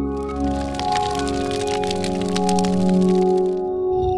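Logo-intro music: a sustained synthesizer chord held under a dense crackling sound effect, which cuts off shortly before the end.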